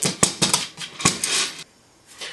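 Clicks and scraping as a wooden lazy-susan top fitted with a metal swivel-bearing plate is handled against a wooden base board, with a sharp click about a quarter second in. The sounds stop abruptly near the end.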